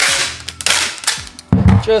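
Packing tape pulled fast off a handheld tape gun in two loud, rasping rips, the second about half a second after the first.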